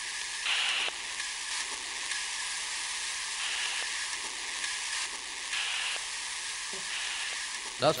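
Portable radio hissing with static while it is being tuned between stations, with a few brief brighter swells of static.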